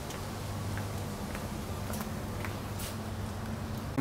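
Steady low hum of room tone with a handful of faint, scattered ticks.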